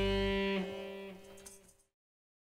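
A live band's held closing chord, electric guitars ringing over bass and keyboard, fading away into silence shortly before the end.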